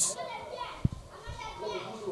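Faint background voices, children's among them, with one brief knock a little before the middle.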